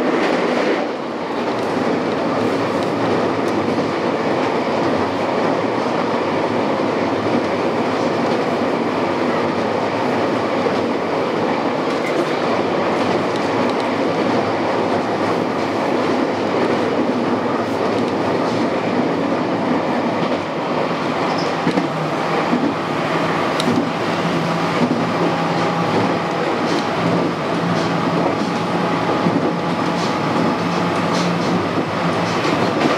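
JR West 223 series electric train running between stations, heard from the driver's cab: a steady rumble of wheels on rail. A few sharp clicks come late on, and a steady low hum joins about two-thirds of the way through.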